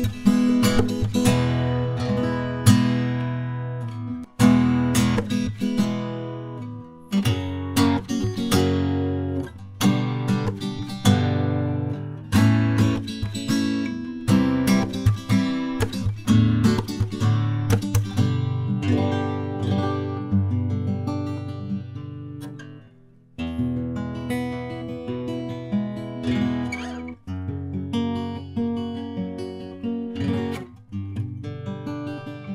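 Cort Core Series solid mahogany acoustic guitar strummed through a run of chords that ring out. The playing breaks off briefly about three quarters of the way through, then picks up again.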